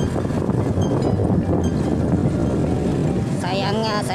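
Small motorbike engine running steadily while riding, a dense low rumble mixed with wind on the microphone. A man's voice starts near the end.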